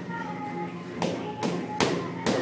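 Boxing gloves striking focus mitts: three sharp smacks, about a second in, half a second later and near the end, over background music.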